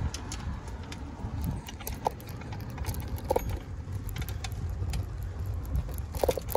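Bicycle rolling over an uneven paved sidewalk: a steady low rumble from the tyres with scattered rattles and clicks as the bike and mounted camera shake, and a couple of brief squeaks.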